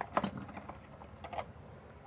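A few light, irregular clicks and taps as a metal ruler and a marker are handled against a sheet-metal amplifier case.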